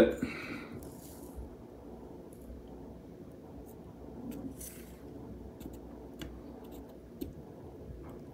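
Quiet room noise with a few faint, scattered ticks as a hot soldering iron melts solder wire into the solder cup of an IC5 connector.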